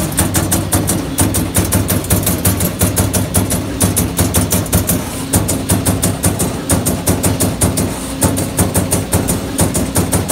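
Amada CNC turret punch press punching sheet metal in a steady rapid rhythm of about five hits a second, over the machine's steady hum.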